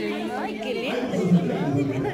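Several people talking over one another, a jumble of overlapping voices with no single clear speaker.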